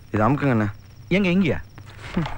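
Crickets chirping steadily in the background, under two short spoken phrases.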